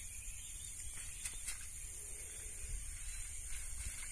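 Wind rumbling on the microphone under a steady high-pitched hiss, with two faint ticks a little over a second in.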